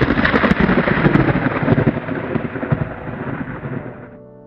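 Thunder rumbling over heavy rain, loudest with a few sharp cracks at the start, then slowly dying away.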